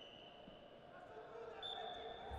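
Quiet room tone of a large sports hall, with faint distant voices and a thin steady high tone that drops out and starts again near the end.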